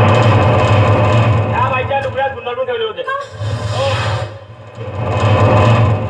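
Actors' voices coming through a stage loudspeaker system, laid over a loud, steady low rumble that eases off briefly a little past the middle.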